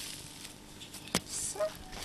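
A hoe blade strikes into the earth once, a sharp thud about a second in, against a faint outdoor background.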